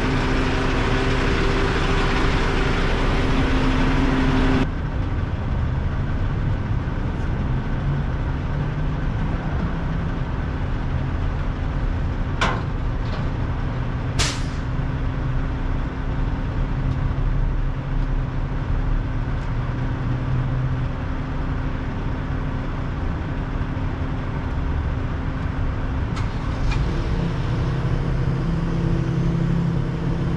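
Car-hauler truck's engine idling steadily. A loud hiss over the first four and a half seconds cuts off suddenly, two brief high squeaks come near the middle, and near the end the engine's tone changes.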